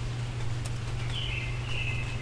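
A songbird singing a quick run of warbled notes, starting about a second in, over a steady low hum. One sharp click comes just before the song.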